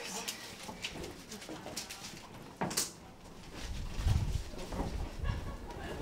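Indistinct voices and movement of a small group walking down a corridor, with one sharp click about two and a half seconds in, then low rumbling handling noise in the second half.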